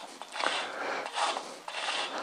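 Charcoal tip on the end of a long bamboo stick scraping across a stretched canvas as lines are drawn, in several short rasping strokes.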